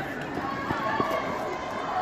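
Children's voices chattering in the background, with a few footsteps on a paved path.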